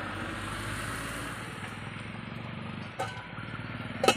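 A steady low rumble like a motor running nearby, with a short metallic clink about three seconds in as a steel lid is set on the cooking pot.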